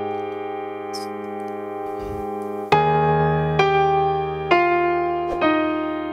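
Digital piano played with both hands, slowly, in F minor: a chord held and fading for nearly three seconds, then a new low bass note with melody notes struck about once a second.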